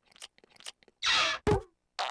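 Cartoon eating sound effects: a sandwich being bitten and chewed, with faint crunchy clicks, then louder crunching bites from about a second in.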